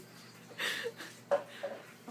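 A person's soft voice sounds: a breathy hiss about half a second in, then two short quiet vocal noises.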